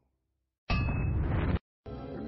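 A single clanging, metallic hit sound effect starts suddenly about two-thirds of a second in, rings for just under a second and is cut off abruptly.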